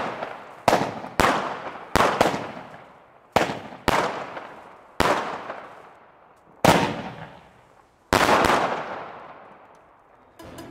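Nico Feuerwerk 'Little Giant' consumer firework battery firing a string of shots: about ten sharp bangs at irregular spacing, each trailing off over about a second, the last two close together a little after eight seconds in before the sound dies away.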